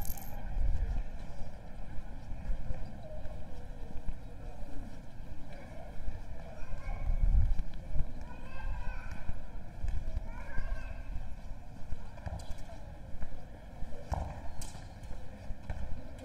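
Footsteps on stone paving with a low, uneven rumble of wind on the microphone, and passers-by talking faintly in the distance. A couple of sharp knocks come near the end.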